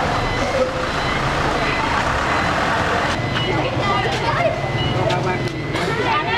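Tow truck's engine idling with a steady low rumble, with scattered voices talking over it.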